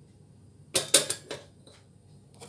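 A glass bowl set down on the metal burner grate of a gas stove: a quick cluster of three or four clinks about a second in.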